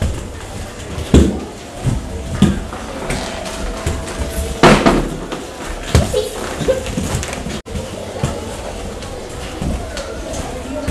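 Off-ice skates knocking and scraping on a hard, smooth floor, with several loud knocks as the skater lands and turns, the loudest about halfway through.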